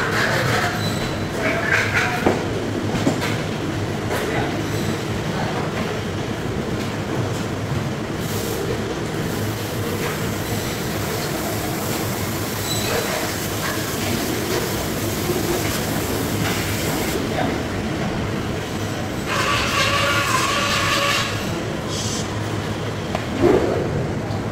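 Steady rumble of fish-processing-room machinery, with a hiss of water spray through the middle stretch while a large king mackerel is cleaned on a plastic cutting board.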